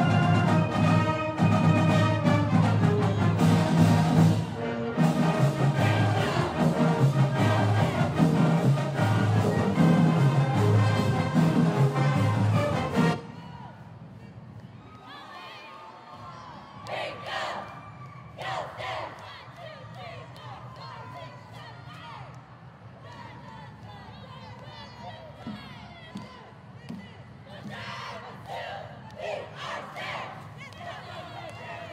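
Loud recorded music with a strong beat plays for a routine and cuts off abruptly about 13 seconds in. After the cut, a cheer squad shouts a chant in short bursts over quieter crowd cheering.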